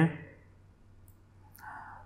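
A man's voice ends a word, then near-quiet room tone with a few faint clicks of a computer mouse scroll wheel as the page scrolls down, and a brief soft sound near the end.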